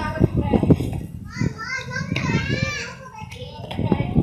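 Children's voices calling and playing, high and rising and falling in pitch, loudest in the middle. A few short sharp clicks, mostly in the first second and again near the end, come from plastic checkers pieces being set down on a board.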